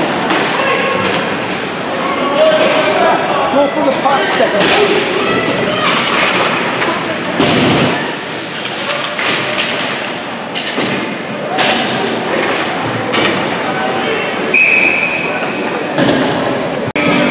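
Ice hockey play heard from beside the rink: repeated thuds and knocks of players, sticks and puck against the boards and glass, with voices shouting. Near the end a referee's whistle blows for about a second, stopping play.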